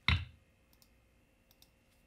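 Computer mouse clicks while dragging and dropping a code block: a short thump right at the start, then a few faint clicks.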